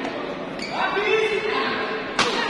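Badminton rally on an indoor court: a sharp racket strike on the shuttlecock at the start, then court shoes squealing on the floor for about a second, echoing in a large hall.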